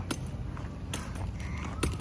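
Light footsteps on pavement, about one a second, over a low rumble of wind on the microphone.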